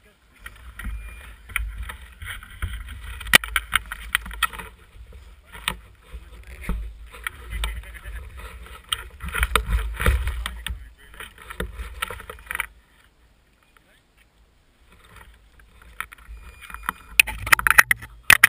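Mountain bikes moving on a gravel forest trail: tyres crunching over grit and the bikes rattling, with sharp knocks now and then and a low wind rumble on the bike-mounted camera's microphone. It comes in stretches, drops almost to silence about two-thirds through, and picks up loudly again near the end.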